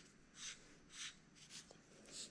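Faint scratching strokes of a marker pen drawing letters on a sheet of paper, a few short strokes about half a second apart.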